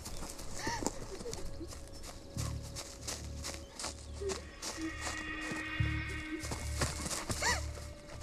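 Tense horror film score with a low pulsing beat, over a rush of quick crunching footsteps through dry grass and brush. A few short rising-and-falling cries come about a second in and again near the end.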